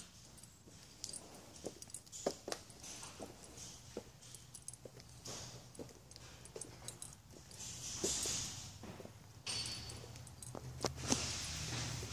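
Irregular light clicks and knocks with a few brief rushes of hiss, over a faint low hum: footsteps and phone handling as the camera is carried across a tiled showroom floor.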